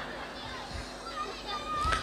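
Faint background voices from the audience, a child's voice among them, with a thin wavering voice heard in the second half.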